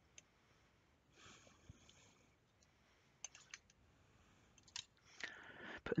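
Faint handling sounds: a soft rustle about a second in as a thin sheet is peeled away from a strip of polymer clay, then a few light clicks on the hard work surface.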